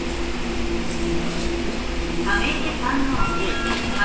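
Tokyo Metro Ginza Line subway train braking into the platform and slowing to a stop, with a steady motor tone that steps lower as it slows over a low running hum.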